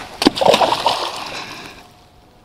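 A rock thrown into deep, muddy floodwater lands with a sharp splash about a quarter second in. Splashing water follows and fades away over the next second or so.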